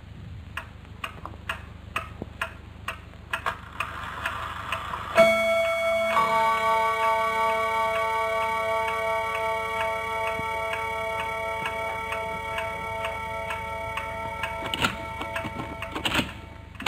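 Cartoon clock ticking, about two ticks a second. About five seconds in, a held ringing chord of several high tones joins the ticking and holds until near the end.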